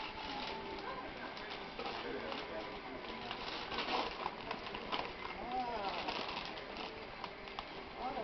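Tissue paper rustling and crinkling as a gift is unwrapped by hand, in crackly bursts that are loudest about four to five seconds in.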